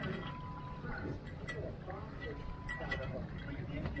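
A person's voice, faint and muffled, with short sounds like "mm-hmm", over a steady low rumble.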